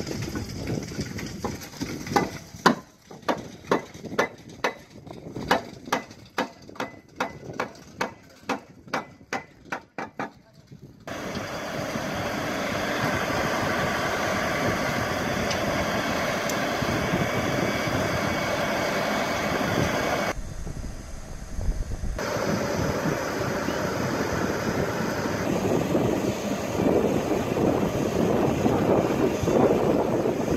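A series of sharp knocks, about two a second, for roughly ten seconds, then the steady running of a boatyard travel lift's engine.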